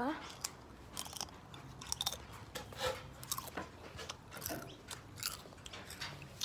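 Close-up chewing of crunchy tortilla chips, a run of irregular crisp crunches.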